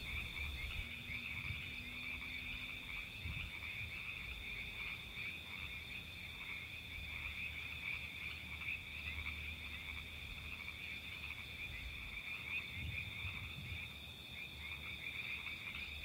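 A chorus of tree frogs calling: many overlapping calls merge into a steady, high-pitched trilling drone that never breaks.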